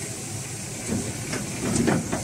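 Tipper semi-trailer unloading chopped maize silage: a steady rush of the load sliding out of the raised body, with knocks and creaks from the tipping body and open tailgate, loudest about a second in and again near the end.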